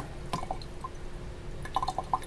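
Water dripping and trickling through a plastic sink strainer into a kitchen sink drain, with a few small drips about half a second in and again near the end.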